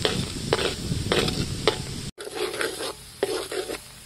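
A metal spatula scraping and stirring chopped ingredients frying in oil in an aluminium wok, with a steady sizzle under repeated scraping strokes. After a brief break about halfway through, the sizzle is quieter and the strokes stop near the end.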